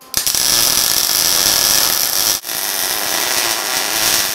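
MIG welder arc welding the steel drag-link tube at its threaded weld bung, a steady loud crackle. It stops for an instant about two and a half seconds in, then starts again.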